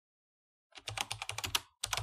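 Computer keyboard typing sound effect: a rapid run of key clicks begins about three-quarters of a second in, breaks off briefly, and resumes near the end.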